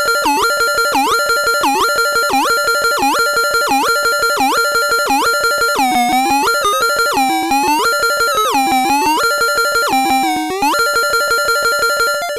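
Circuit-bent toy typewriter's glitchy electronic tones pulsing in a fast rhythm over a steady high tone, triggered from a Korg Monotribe. Its pitch control is swept, giving repeated swoops down and back up, about one and a half a second at first, then longer, slower dips from about halfway.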